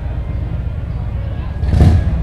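Low rumbling street background noise, with a brief louder rush near the end.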